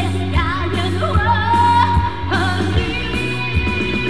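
A woman singing a Mandarin pop song live into a handheld microphone over amplified backing music with a steady bass, holding one long note in the middle.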